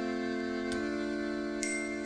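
Glockenspiel struck twice with a mallet, about a second in and near the end, its bright metal notes ringing on over a steady chord held on an accordion.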